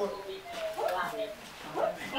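Short, bending, voice-like calls, several in quick succession, like a small creature whimpering or yipping, coming from the robot arm art installation.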